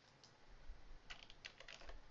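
Faint computer keyboard typing: a quick cluster of sharp clicks in the second half, after a couple of fainter ones near the start.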